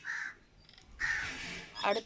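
A crow cawing twice, a short harsh call at the start and a longer, rougher one about a second in, followed by a woman starting to speak near the end.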